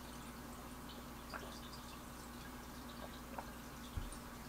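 Quiet room tone: a steady low hum with a few faint, short ticks and a small knock near the end.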